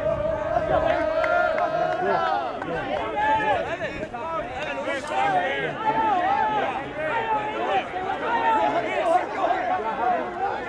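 Many voices shouting and talking over each other from a sideline of players. One long held call runs until about two seconds in.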